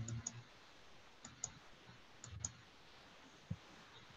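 Faint computer mouse clicks: three pairs of sharp clicks about a second apart, then a soft low thump near the end.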